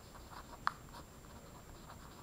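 Pen writing on paper: faint, short scratching strokes, with one sharper tick a little under a second in.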